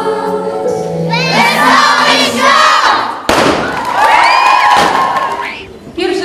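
A children's stage choir holds the last note of a Christmas song, then the children break into cheering and shouting. A sharp thump comes a little after three seconds in.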